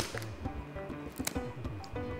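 Background music with low bass notes and short plucked notes. Over it, a sharp snip at the very start and fainter clicks a little past halfway, from pruning shears cutting into a bird carcass.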